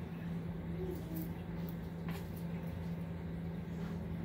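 A steady low hum, with a few faint knife taps on a plastic cutting board as iceberg lettuce is sliced.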